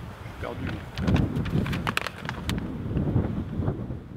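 Wind buffeting an outdoor microphone, with low indistinct voices and a quick run of sharp clicks in the middle.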